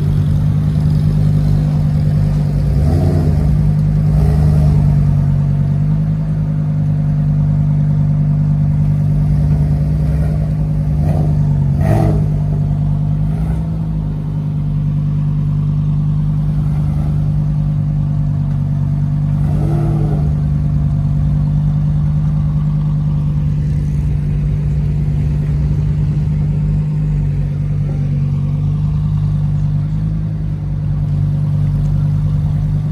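Lamborghini Huracán's V10 engine idling with a steady low drone as the car creeps along at walking pace, with a couple of short rises in pitch and a sharp click about twelve seconds in.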